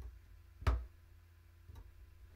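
A single sharp click of a computer mouse button with a low thud, about a third of the way in. There are fainter ticks just before and after it, over a steady low hum.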